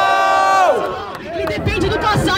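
Voices at a freestyle rap battle. A long held vocal note stops about three quarters of a second in, then a rapper's voice on the microphone starts up again about one and a half seconds in, over crowd noise.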